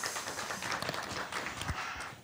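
Hand-clapping applause from a small audience and panel, a dense patter of claps that thins out near the end.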